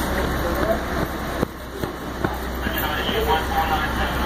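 Indistinct voices over a steady low hum and noisy background, with a few sharp clicks a little before the middle.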